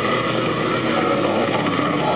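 Hardcore metal band playing live: a dense, steady wall of heavily distorted guitar, loud and muffled in the recording.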